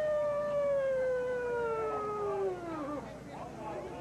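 An emergency vehicle's siren winding down: one long tone, sliding slowly lower in pitch, fading out about three seconds in, with crowd voices beneath it.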